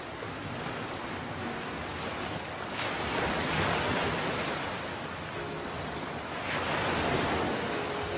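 Ocean surf washing against rocks. Two larger waves swell up, about three seconds in and again near the end.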